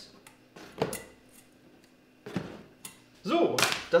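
Hands handling a CPU tower cooler and its fan clips on a motherboard: a sharp click about a second in, a couple of softer knocks, and louder handling noise near the end.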